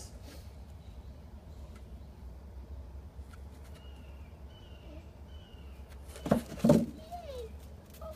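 A pit bull whining: faint high whines, then two loud short sounds close together about six seconds in, followed by a short falling whine, over a steady low hum.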